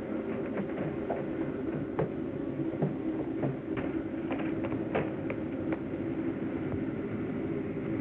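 A railway car running on the rails: a steady rumble broken by irregular sharp clicks and knocks.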